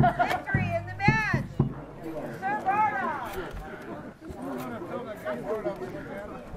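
Raised voices calling out over background crowd chatter, with a few sharp knocks in the first second.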